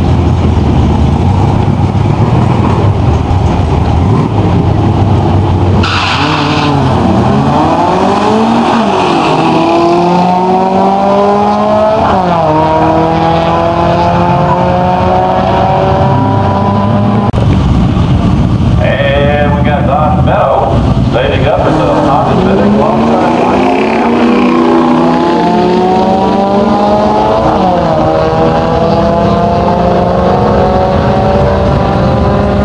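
Drag-racing cars accelerating hard down an eighth-mile strip. After a steady engine drone, an engine launches about six seconds in and climbs in pitch, dropping back at each gear change. A second run climbs the same way in the last third.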